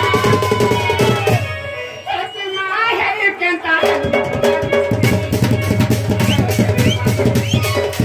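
Live folk music: a large barrel drum (dhol) is struck with a stick in a steady beat under a gliding melodic line. The drumming stops about a second and a half in, leaving the melody alone, and comes back around four seconds in.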